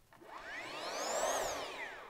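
A whoosh transition sound effect: a smooth sweep that swells, peaks just past the middle and fades away, its pitch rising and then falling back.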